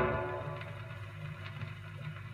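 A 78 rpm record on a record player: the song's last chord fades out over the first half-second. After that there is only surface hiss, a low turntable rumble and a faint click about every three-quarters of a second, once per turn, as the needle rides the run-out groove at the end of the side.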